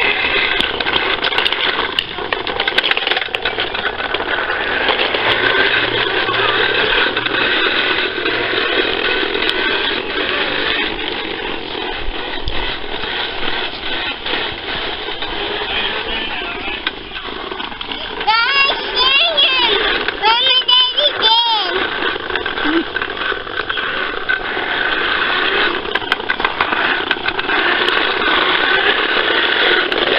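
Fisher-Price toy lawnmower being pushed, giving a steady whirring, rattling noise. A little past the middle a high, wavering voice-like sound comes twice.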